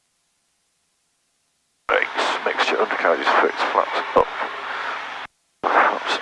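Complete silence for about two seconds, then a person's voice talking over the headset audio, with a brief dead gap about five seconds in before the voice resumes.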